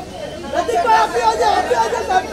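Overlapping voices of several people talking and calling out over one another, getting louder about half a second in.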